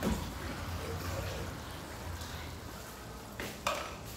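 Shredded cabbage and carrots sizzling softly in a pot on the stove, with a couple of brief louder sounds near the end.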